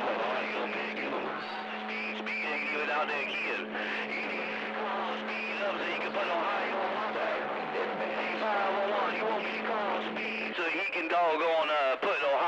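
Incoming CB radio transmission from the radio's speaker: a garbled voice over static, with a steady low hum under it that stops about ten and a half seconds in.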